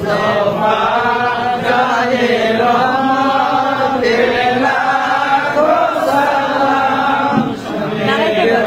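A group of voices chanting an Islamic devotional chant together, in long, drawn-out notes, with a brief drop near the end.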